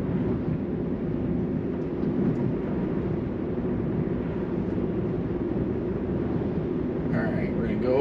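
Steady road and tyre rumble inside the cabin of a Tesla electric car cruising at speed, even and low-pitched throughout.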